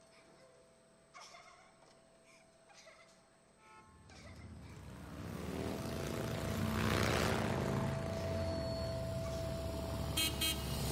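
A motor vehicle's engine and road noise, faint at first, swelling from about four seconds in to its loudest near seven seconds as it comes close, then running on.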